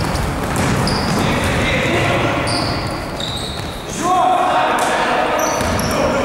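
Basketball game in a reverberant gym: the ball dribbling, players' running footsteps and several short, high sneaker squeaks on the court floor, with players' voices and a shout about four seconds in.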